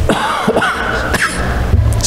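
Short wordless vocal sounds that glide up and down in pitch, with a few brief clicks or rustles among them.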